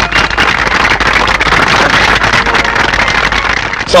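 Audience applause: many hands clapping steadily, easing off slightly just before the end.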